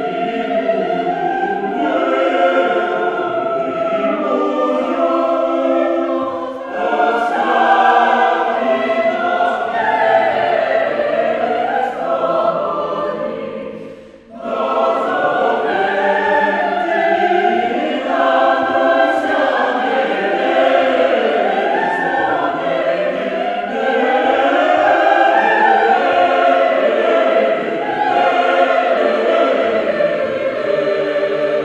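Mixed choir singing a sustained, slow-moving piece in several parts, with a brief break in the sound about halfway through before the voices come back in.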